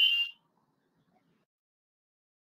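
The last note of a show's closing jingle: a high steady tone with a hiss above it, cutting off about a third of a second in, then near silence.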